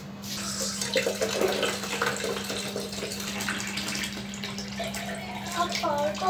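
Water running steadily from a tap into a plastic jug, filling it.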